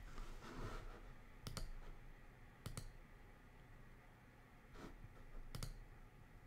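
Three faint, sharp clicks spread unevenly over a few seconds against a low, steady room hum, with a soft rustle in the first second.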